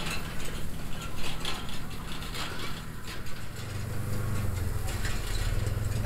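Diesel engine of a Rural King RK37 compact tractor running while it pulls a hay rake, with the rake's mechanism clattering. The engine hum grows louder about halfway through.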